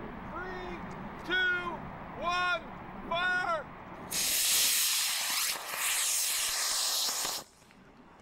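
A countdown called aloud one number per second, then a solid-fuel Estes model rocket motor ignites about four seconds in and burns with a loud, steady hiss for about three seconds. The hiss cuts off suddenly as the motor burns out.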